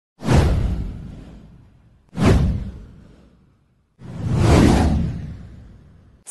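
Three whoosh sound effects of a title intro, about two seconds apart. The first two hit sharply and fade away; the third swells up more slowly before fading.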